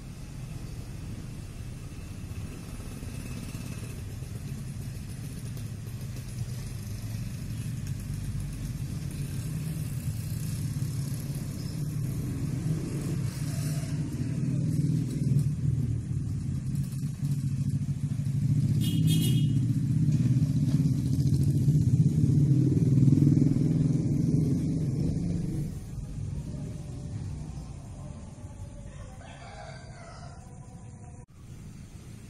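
Low, steady vehicle rumble that slowly builds, peaks about three-quarters of the way through, then fades toward the end. A brief high-pitched call cuts in about two-thirds of the way through.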